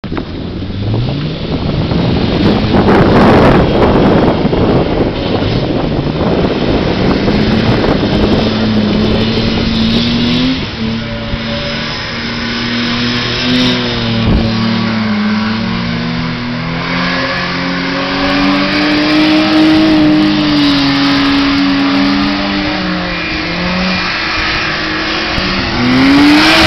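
A Mazda MX-5's four-cylinder and a BMW E30 320i's straight-six revving hard as the two cars spin donuts on sand. The engine pitch climbs, holds high and wavers up and down as they circle.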